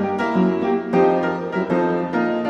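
Piano music, a brisk run of notes, as the background score of a silent film.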